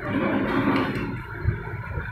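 Muffled background noise in a small room, with a dull thump about one and a half seconds in.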